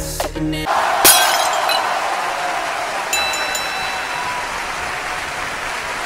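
The song breaks off for a crash sound effect of shattering glass: a sharp crack about a second in, then a long, slowly fading hiss with a few faint tinkles, before the music comes back at the end.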